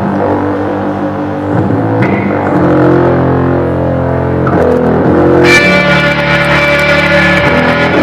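Amplified semi-hollow electric guitar holding long, sustained chords that shift every second or two. About five and a half seconds in, a brighter, fuller chord comes in.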